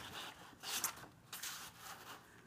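Sheets of patterned scrapbook paper rustling and sliding as they are handled, in a few short swishes.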